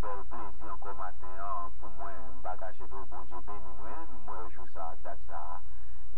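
Continuous speech with a steady low hum beneath it.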